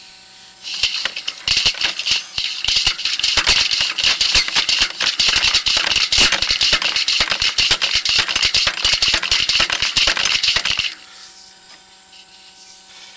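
Sewer inspection camera's push cable rattling in fast, irregular clicks as it is forced down the sewer line. The rattle starts about a second in and stops about a second before the end. The camera is meeting resistance from fittings and offsets and can't be pushed much further.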